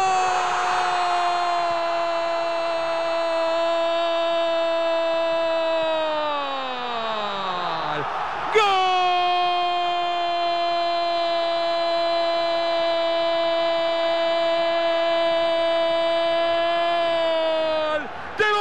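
A football commentator's long drawn-out goal cry, "gooool": one held shout for about six seconds that slides down in pitch as his breath runs out, then, after a quick breath, a second long held shout at the same high pitch.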